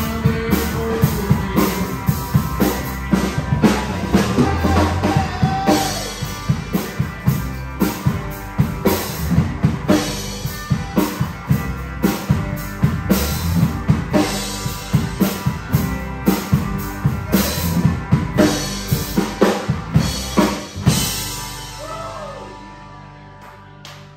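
Live rock band playing with the drum kit loudest: a steady, driving beat of kick and snare over other instruments. The playing stops about a second before the end.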